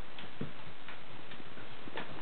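A few faint, light ticks and taps from Bengal kittens moving about on a hard floor, over a steady hiss.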